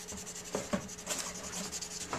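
Soft ebony pencil rubbed back and forth on paper, shading graphite over the back of a drawing so it can be transferred, with a few sharper strokes about half a second in.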